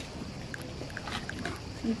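Outdoor harbour-front ambience: a steady background hiss with faint short chirps or ticks repeating every fraction of a second, and a voice starting a word near the end.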